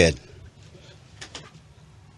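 A man's voice finishes a word, then dead air on a muted call line: faint hiss and low hum, with a couple of faint clicks a little over a second in.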